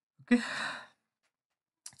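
A single short sigh: a breathy exhale of about half a second, starting with a brief low catch in the voice.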